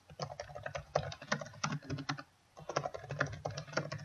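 Fast typing on a laptop keyboard, a quick run of key clicks as a password is entered. There is a short pause a little past halfway, then more typing as the password is typed again to confirm it.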